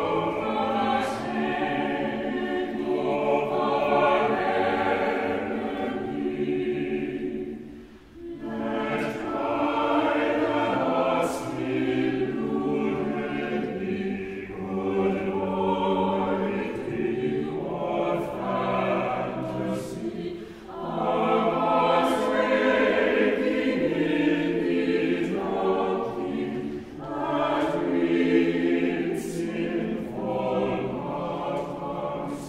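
Church choir singing, in long phrases broken by short pauses about 8, 20 and 27 seconds in.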